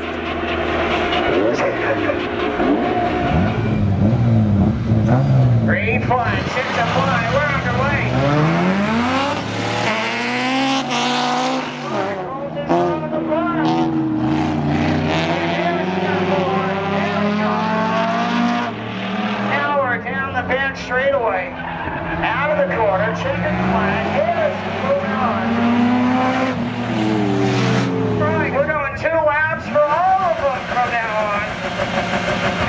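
Street cars accelerating hard on a drag strip: engines at full throttle, pitch climbing through each gear and dropping at the shifts, over several long pulls one after another.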